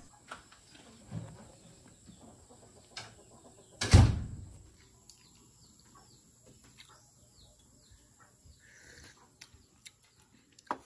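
A single sharp knock about four seconds in, with a few small clicks before it, over a quiet background with faint bird chirps.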